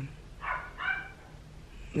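Small dog, a Yorkie-poo, giving two short calls in the background about half a second apart: the sign that the dog is awake and it's time to get up.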